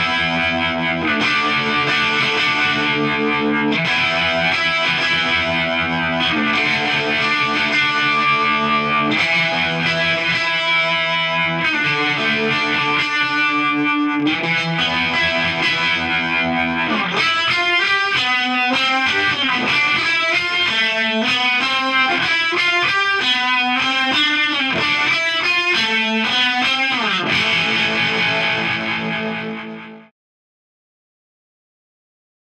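Overdriven electric guitar (a Telecaster) strumming chords through an Electro-Harmonix Wiggler tube vibrato pedal. From about halfway through, the notes warble up and down in pitch, and the sound fades out at the very end.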